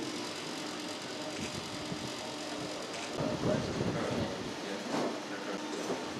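Indistinct murmur of a group of people in a room over a steady low hum.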